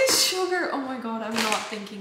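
A young woman's voice talking, with no other clear sound beside it.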